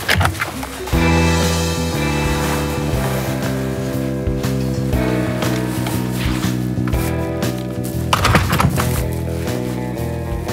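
Background music score of sustained, slowly shifting chords, coming in about a second in, with a louder accent about eight seconds in.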